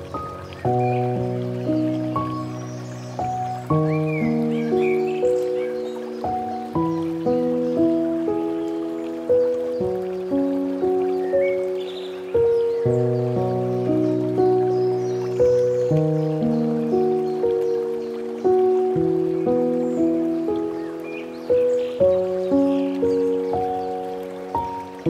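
Slow, gentle solo piano music: single notes and soft chords, each struck and left to ring and fade, with a new note roughly every half second to second.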